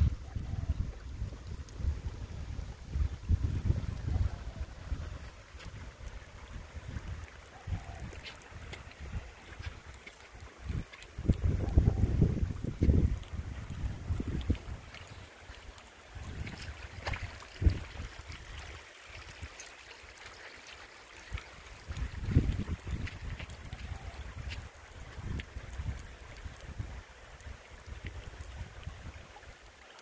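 Wind buffeting the phone's microphone in irregular low gusts, strongest near the start and about a third of the way in, over a faint steady wash of running water, with a few handling clicks.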